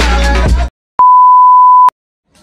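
Background music with a beat cuts off suddenly, and after a brief silence a steady, loud, high-pitched test-tone beep sounds for about a second: the TV colour-bars test tone.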